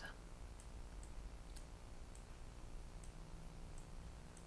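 Faint computer-mouse clicks, a handful of single clicks spaced roughly a second apart, over a low steady hum.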